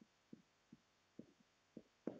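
Near silence, with four faint, dull taps about half a second apart: a marker tapping against a whiteboard as a word is written.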